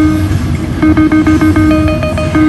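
Video keno machine's electronic draw tones: a rapid run of short beeps as numbers are drawn, breaking off briefly about half a second in and then resuming. A low hum sits underneath.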